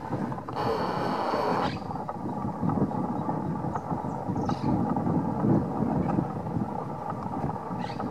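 Wind buffeting the microphone: a rough, uneven rumble with a stronger rush about a second in.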